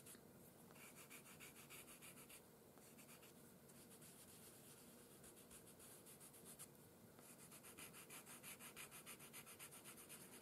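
Faint scratchy rubbing of a paper blending stump worked back and forth over pastel on paper in short, quick strokes, a little louder near the end.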